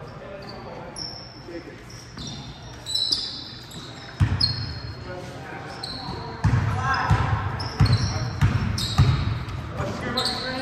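Basketball bouncing on a hardwood gym floor amid sneaker squeaks, in a large echoing gym. The squeaks come and go throughout; the ball thumps begin about four seconds in and come closer together in the second half, over background voices.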